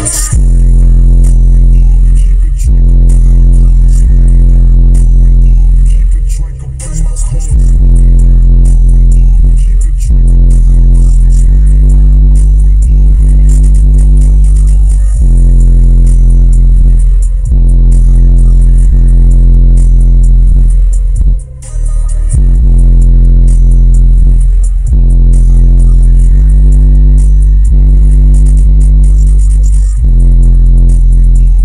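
Bass-heavy electronic music played very loud through a car audio system with three 18-inch subwoofers, the deep bass notes dominating. The beat drops out briefly twice.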